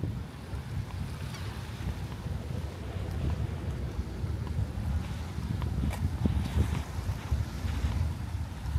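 Wind buffeting the microphone, a steady low rumble that rises and falls.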